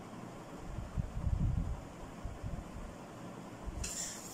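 Soft low bumps and rumble from hands and a ruler pressed on a paper-covered table while a line is drawn with a pencil, over faint room hiss. The bumps are strongest about a second in.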